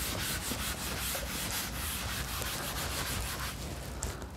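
Chalk being erased from a chalkboard: quick, repeated back-and-forth rubbing strokes that die away about three and a half seconds in.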